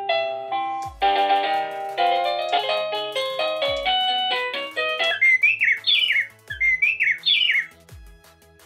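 A wireless doorbell's plug-in indoor chime unit plays a run of electronic ringtones as its tune-select button is pressed, the tune changing several times. Stepped chime melodies play first, then from about five seconds in a chirping birdsong ringtone.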